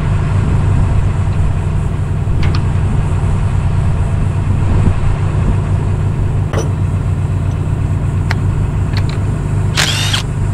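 A truck engine idling steadily. Light metallic clicks from tools and fittings being handled come on top, with a short louder clatter near the end.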